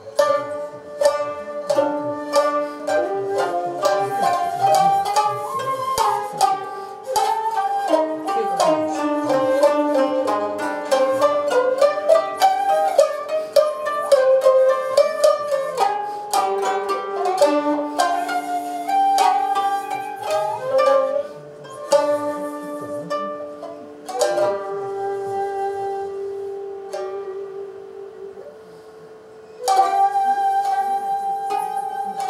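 Japanese sankyoku ensemble playing traditional chamber music: koto and shamisen plucking a busy melody over long held notes. The playing thins out and goes quieter in the last few seconds, then the full ensemble comes back in at the very end.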